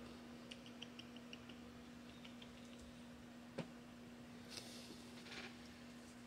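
Near silence over a steady low hum, with a scatter of faint light ticks in the first second and a half, one sharper click about halfway through, and two brief soft rustles near the end.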